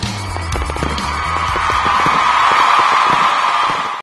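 Channel logo jingle: music with crackling firework sound effects. A noisy swell builds and grows louder through the second half.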